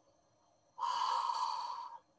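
A woman takes one long, audible breath starting about a second in and lasting just over a second, demonstrating slow mindful breathing. It cuts off suddenly.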